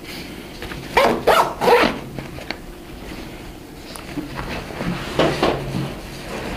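Nylon backpack pocket being zipped shut. A few short, loud yelp-like sounds with bending pitch come about a second in and again near the end; these may be an animal rather than the zip.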